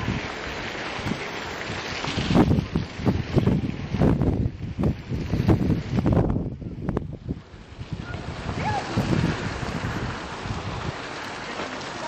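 Wind buffeting the camera's microphone in irregular low gusts, strongest in the first half, easing after about seven seconds into a steadier, softer rush.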